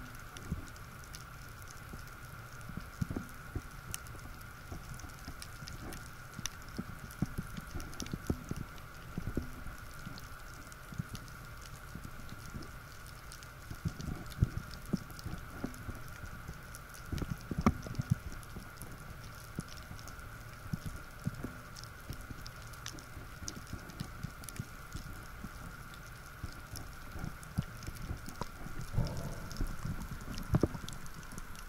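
Underwater sound picked up by a diver's camera: scattered faint clicks and crackles with low thumps of water movement, over a steady high hum.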